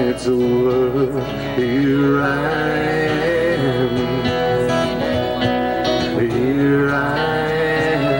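A live band playing, with an electric guitar carrying a bending, gliding melody over the backing.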